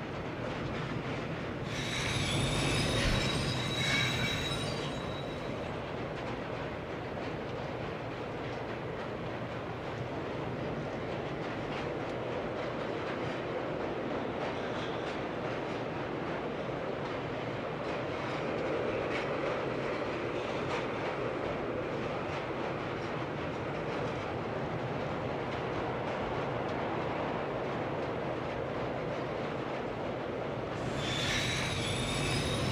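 Subway train running. Its wheels squeal on the rails for a few seconds starting about two seconds in, then it settles into a steady rumble with faint clicking of the wheels over the track.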